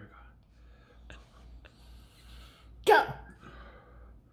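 Mostly quiet room with a faint hiss and a couple of small clicks, then a single shout of "Go!" about three seconds in.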